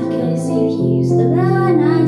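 A woman singing a slow song into a microphone, accompanied by chords on a Yamaha Clavinova digital piano; a new low piano note comes in about a second in.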